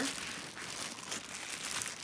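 Rustling and crinkling of a fabric garment tote bag being handled, as an irregular soft noise with no voice over it.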